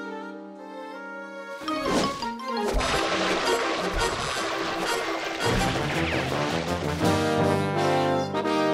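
Orchestral cartoon score with brass, soft held notes at first; about one and a half seconds in, a fast, dense flurry of slapstick sound effects with many sharp hits bursts in over the music as the wooden washtub and wringer are worked. Near the end the brass music comes back to the fore.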